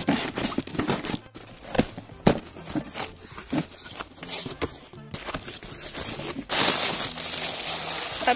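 A cardboard parcel being opened by hand: flaps and tape tearing, with scattered rustles and clicks, then, from about six and a half seconds in, plastic wrapping and bubble wrap crinkling steadily as it is handled.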